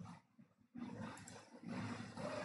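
Faint background noise from the recording, a low hiss and room noise, which drops out to silence for about half a second near the start.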